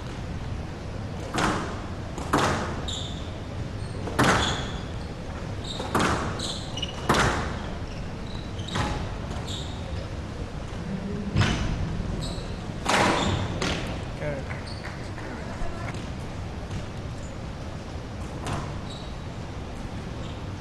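A squash rally on a glass court: the ball cracks off rackets and walls every second or two, with short high squeaks of players' shoes on the court floor between the shots.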